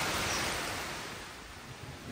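Heavy rain falling, an even hiss that fades down gradually.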